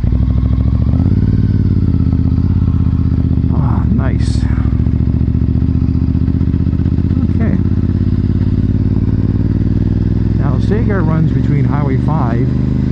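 Honda RC51 SP2's 1000cc V-twin engine pulling the motorcycle along at speed. About a second in it climbs in pitch as the bike accelerates, then holds a steady cruising note.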